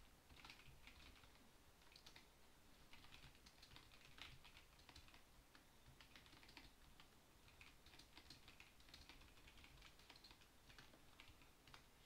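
Faint computer keyboard typing: an irregular run of key clicks as a line of text is deleted and retyped.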